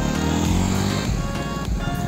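A motorcycle passing close by, its engine note falling in pitch as it goes by, over background music.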